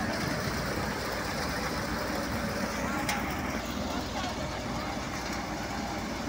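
Massey Ferguson 245 DI tractor's three-cylinder diesel engine running steadily while powering a threshing machine, giving a continuous even mechanical noise. A single sharp click about three seconds in.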